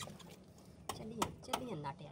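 A man's voice saying a few short words, over a faint steady low hum.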